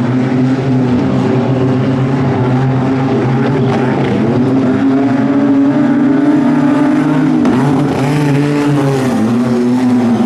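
Several wingless sprint cars' engines running together at part throttle, their notes rising and falling, as the field circulates slowly under caution before a restart.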